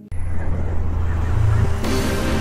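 Loud low rumbling sound effect opening a channel intro, with a bright noisy hit near the end as the intro music begins.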